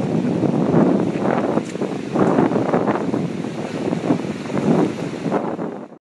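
Wind buffeting the microphone in uneven gusts, swelling and dipping, fading out near the end.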